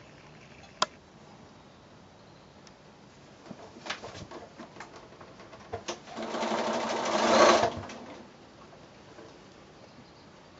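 Bernina sewing machine stitching a short seam in one burst of about two seconds, swelling just before it stops. Before it, a single sharp click about a second in and a few lighter clicks.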